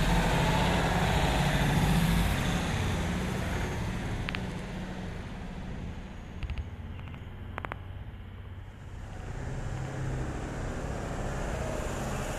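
Street traffic: a motor vehicle's engine and tyre noise, loudest at the start, fading away over about seven seconds, then traffic rising again near the end, with a few faint clicks in the lull.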